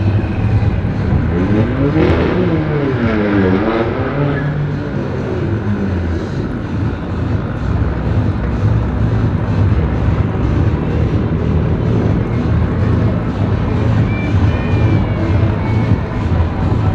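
Car engines at a drag strip giving a steady low rumble, with one engine's pitch sweeping up and down several times between about one and five seconds in.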